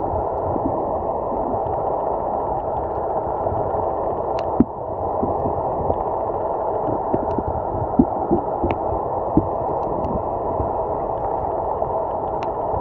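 Underwater ambience heard through a camera's housing: a steady low rushing with scattered sharp clicks.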